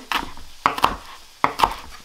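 Chef's knife chopping flat-leaf parsley on a wooden cutting board: about five sharp, unevenly spaced knocks of the blade through the stalks onto the board.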